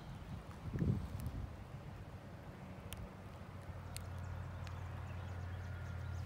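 A low, steady mechanical hum, like a distant motor, that grows louder about four seconds in, with a soft thump near the start and a few faint ticks.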